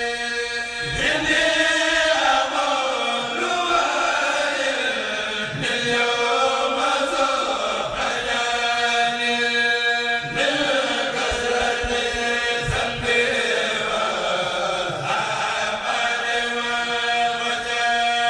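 A Mouride kourel chanting a khassida as a group, unaccompanied. Phrases rise and fall in pitch and begin about every four to five seconds, with a steady held note sustained between them.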